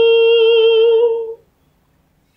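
A woman's unaccompanied voice holds one long, steady final note, wavering slightly toward its end. It stops about one and a half seconds in.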